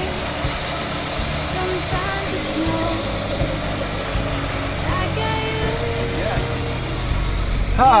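1989 Volkswagen Cabriolet's four-cylinder engine idling steadily, heard at the open engine bay.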